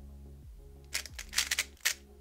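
GAN 356 Air SM speedcube being turned quickly through a U-perm algorithm: a fast run of plastic clicks and clacks from about halfway in, lasting about a second. Steady background music plays underneath.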